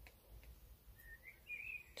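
Near silence: quiet room tone with a couple of soft clicks of fine copper wire being handled, and faint high chirping notes from about a second in.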